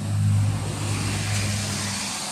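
Road traffic passing close by: a truck's engine drones low and steady over tyre noise, the drone cutting out near the end as the noise fades.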